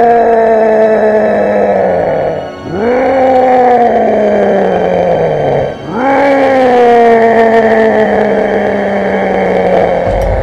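Film monster's roar: three long, loud roars, each sweeping up quickly and then sliding slowly down in pitch, with short breaks about two and a half and six seconds in.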